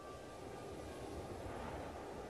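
Steady rushing background noise with a low rumble underneath.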